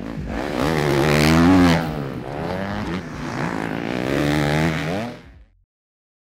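Suzuki 250 four-stroke motocross bike revving hard on a dirt track, its pitch climbing and dropping several times as the rider works the throttle and gears. The sound fades out and stops about five and a half seconds in.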